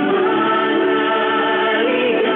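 A group of voices singing a slow gospel worship song, holding long notes that glide between pitches.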